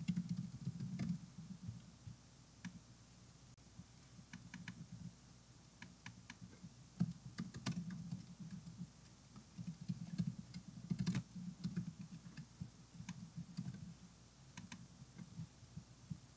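Typing on a computer keyboard in short bursts with pauses, faint and dull, picked up by a microphone that has been set down.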